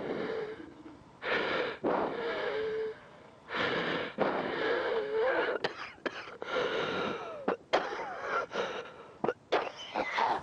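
Labored, wheezing human breathing with a thin whistling note in the breaths. There are two long rasping breaths in the first half, then quicker, shorter, catching breaths in the second half: the breathing of someone struggling for air, as with emphysema.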